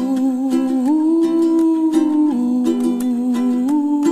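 Music: a man humming a slow wordless melody in long held notes over a gently strummed ukulele.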